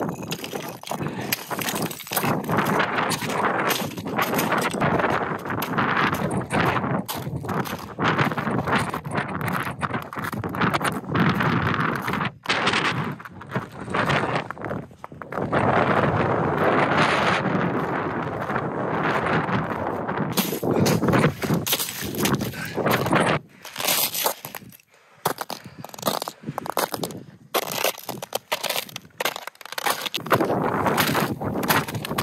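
Close, loud crunching and scraping of crusted snow and ice under boots during fast movement over the snow, continuing for long stretches with a few short breaks.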